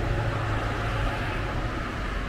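Steady low rumble of road traffic passing the drive-in.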